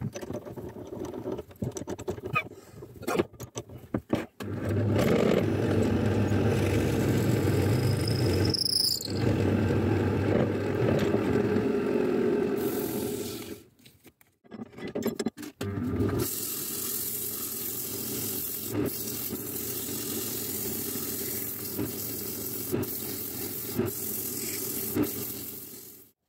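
Wood lathe running with sandpaper held against the spinning ash, mahogany and walnut bowl blank, a steady hiss over the motor hum. It is preceded by a few seconds of tool-handling clicks. There is a short high squeal near nine seconds and a break around fourteen seconds.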